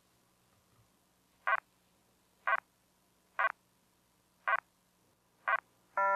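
Five short electronic blips, about one a second, each with a quick faint second pulse: a sci-fi scanning or readout sound effect as the android examines the injured man.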